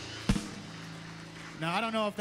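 A worship band ending a song: one loud hit about a third of a second in, then the last low note ringing out and fading. A man starts speaking near the end.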